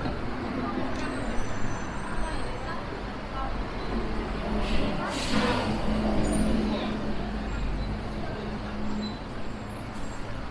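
City street traffic with a steady low rumble, a bus engine humming through the middle, and a short burst of hiss about five seconds in.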